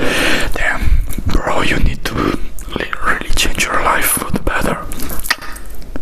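Close-microphone ASMR whispering into a handheld recorder, unintelligible and breathy, with scattered clicks and crackles throughout.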